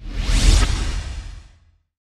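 Logo-reveal whoosh sound effect with a deep boom beneath it, starting suddenly, loudest about half a second in and fading away within about a second and a half.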